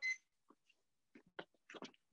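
Near silence, broken by a few faint, very short ticks and rustles.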